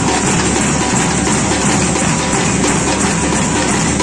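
A percussion ensemble playing drums and hand-held shakers in a steady, busy rhythm.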